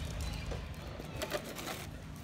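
Outdoor ambience with a steady low rumble and a faint bird call, with a few sharp clicks in the second half.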